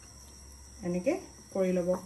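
A woman's voice making two short utterances, about a second in and again near the end. Under it runs a steady high-pitched hiss.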